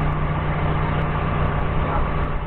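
Doosan 4.5-ton forklift's engine running steadily, a constant low hum.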